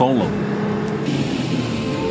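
School bus engine running as the bus drives along, a steady low drone under road hiss that grows brighter about a second in.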